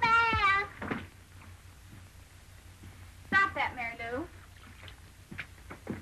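A young child's high voice exclaiming excitedly at the start. About three seconds in comes a second high cry that falls in pitch, and a few soft knocks follow near the end.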